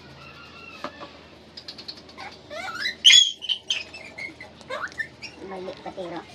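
A puppy whining and yelping in short, high-pitched cries, loudest about three seconds in, while it is held and dosed with medicine.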